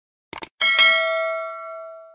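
A quick mouse-click sound effect, then a bright notification-bell chime about half a second in that rings and fades over about a second and a half: the bell-icon click of a YouTube subscribe-button animation.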